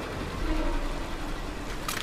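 Steady rushing of a waterfall from an animated episode's soundtrack, with a deep rumble underneath.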